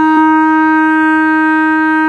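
B-flat clarinet holding one long, steady note.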